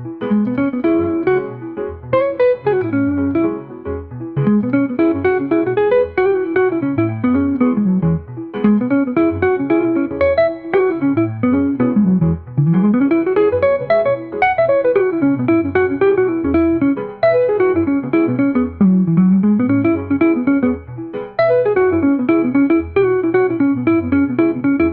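Instrumental jazz music led by a guitar playing flowing melodic phrases that climb and fall, over a steady bass line.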